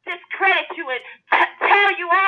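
Speech only: a preacher's voice talking through a sermon.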